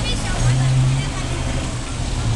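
Open-air street market ambience: scattered voices of vendors and passers-by over a steady low rumble.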